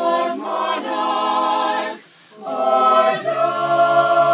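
A group of high school carolers singing a cappella, holding long notes. The singing stops for about half a second midway, then comes back louder.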